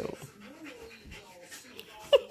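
Siberian husky vocalizing with soft whining and grumbling that rises and falls in pitch, a little louder right at the start.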